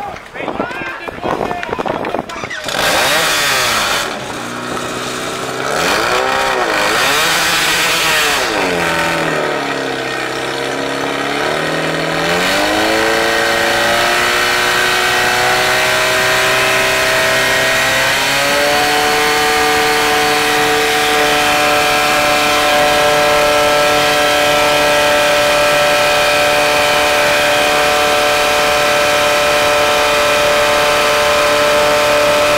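Portable fire pump engine revving up and down unevenly, then climbing to high, steady revs and stepping up once more about two-thirds of the way in, held at full speed as it drives water through the hoses to the targets.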